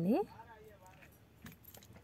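Small metal bell on the end of a gold bead hanging jingling faintly as it is handled, with a few light clinks.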